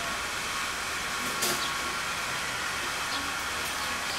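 Steady background hiss with no speech, strongest in the high range, and a faint short tick about one and a half seconds in.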